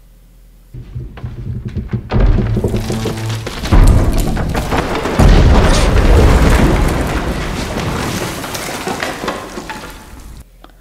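A TV drama's soundtrack: a tense score with heavy low booms and a dense crashing rumble. It starts about a second in, hits its loudest blows around four and five seconds, then slowly fades.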